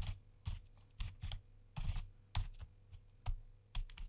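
Typing on a computer keyboard: about a dozen separate keystrokes at an uneven pace, a few a second, as a line of code is entered.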